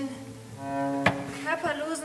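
Live cello and double bass: a short held bowed note over a lower tone, broken by a single sharp knock about halfway through.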